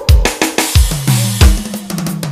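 A forró band's music starting up: a steady drum beat of kick and snare, with low bass notes coming in about a second in.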